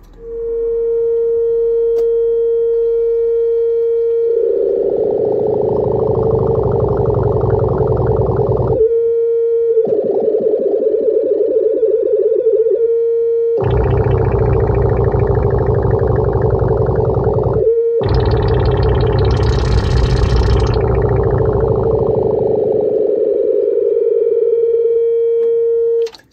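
Synthesizer sine-wave oscillator holding a steady mid-pitched tone, then frequency-modulated by a fidget-spinner LFO module. The pure tone turns into a dense, buzzing, warbling sound that swells and eases as the FM amount is turned up and down, with two brief dropouts. It settles back to the plain sine tone near the end.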